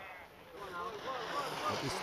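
Outdoor hiss of wind and a snowboard sliding on snow, with a faint distant voice underneath.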